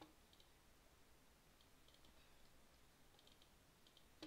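Near silence with a few faint computer mouse clicks, a small cluster of them near the end.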